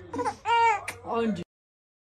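A baby's high-pitched vocal squeals, two short cries in quick succession, cut off abruptly about one and a half seconds in.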